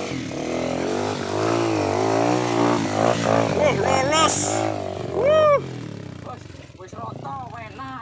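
Trail dirt bike engine running at low revs while the bike is ridden over loose rocks, with people yelling drawn-out 'whoa' calls over it; one loud shout comes about five seconds in, and the sound falls away after it.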